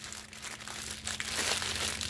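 Small clear plastic bags of diamond-painting drills crinkling as they are handled and bundled together by hand, with a run of fine crackles that grows a little louder in the second half.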